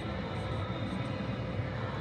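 Steady low background hum of a large indoor building, with no distinct events.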